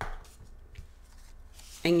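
Faint rustling and light taps of a paper leaf and a glue stick being handled on a tabletop, with a short scuff at the very start.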